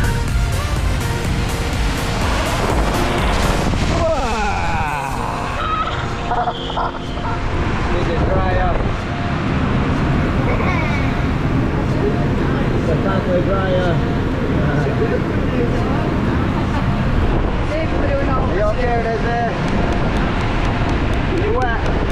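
Steady rushing air from the blower of a walk-in body dryer booth, under children's voices and background music.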